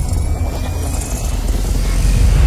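Cinematic intro sound effect: a deep, steady rumble with a hiss over it and a faint thin tone slowly rising.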